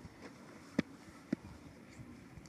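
Two sharp knocks about half a second apart from a cricket ball and bat as a delivery is played at the crease: the ball pitching, then meeting the bat.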